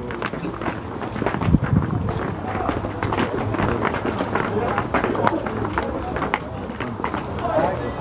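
Indistinct chatter of several footballers mixed with the many short clicks and scuffs of boot studs on a concrete path as the players file past close by.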